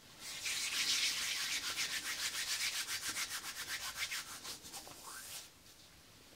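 Palms rubbed briskly together: quick, even back-and-forth strokes. Loudest about a second in, it then grows softer and stops shortly before the end.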